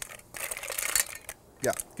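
Blue mussel shells clicking and clattering against each other and a stainless steel bowl as a hand stirs through them, for under a second before they settle.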